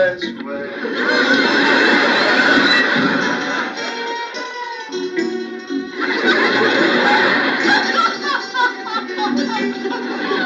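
A television music score plays, with a woman's wordless sobbing and wavering cries over it.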